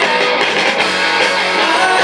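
Live rock band playing an instrumental passage: electric guitars, bass guitar and drums, amplified, with no vocals.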